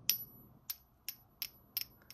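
Metal barrel of a Sakura Craft Lab 001 gel pen tapped lightly against the pen's metal front section about five times, each tap leaving a high, thin ring. The ring marks the barrel as probably all brass, since aluminum would not ring like that.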